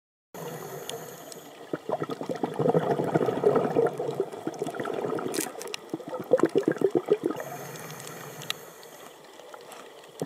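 Scuba diver's exhaled air bubbling out of the regulator in two long crackling bursts, heard underwater, with a quieter steady hiss before and after them between breaths.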